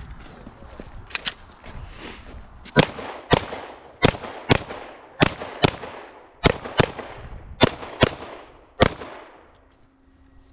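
Pistol fired in quick pairs: about eleven sharp shots, each with a short ring-off, from about three seconds in until nearly the end. Two fainter shots come about a second in.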